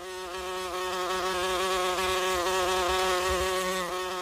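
A steady, fixed-pitch electrical buzz with many overtones, which swells in at the start and fades away near the end.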